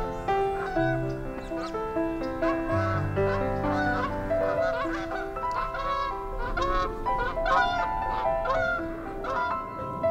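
Slow solo piano music with live bird calls over it: a run of short calls repeating in quick succession through most of the stretch.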